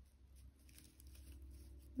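Near silence: faint rustling and small ticks of paper yarn being drawn through crochet stitches to hide the tail, over a low steady hum.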